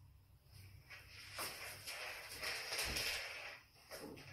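Faint rustling and shuffling handling noises with a few light clicks, as a person finishes working a parrot's harness and moves away from the perch. The sound builds about a second in and dies away just before the end.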